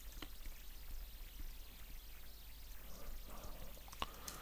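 Steady faint hiss of microphone and room noise, with a few soft computer-keyboard keystrokes, one clear click near the start.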